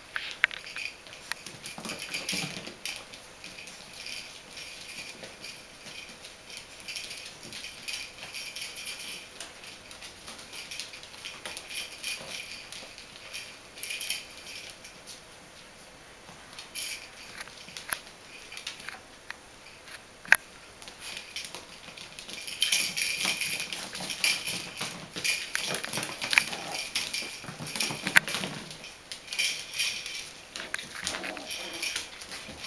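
Bichon Frisé puppies playing and scuffling on a hard floor: paws and claws clicking and pattering, with scattered sharp clicks. The scuffling grows busier and louder near the end.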